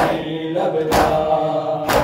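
Mourners beating their chests in unison (matam), a sharp slap about once a second, three strikes, under a chanted nauha lament.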